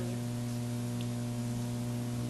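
Steady electrical mains hum, a constant low drone over faint background hiss.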